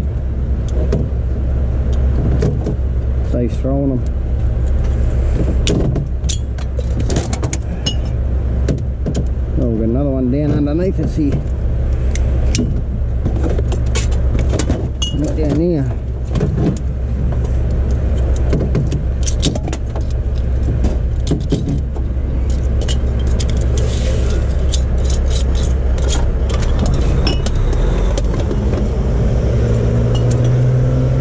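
A vehicle engine idling steadily under glass bottles and metal cans clinking and rattling as they are handled and sorted, with a few brief murmurs of a voice.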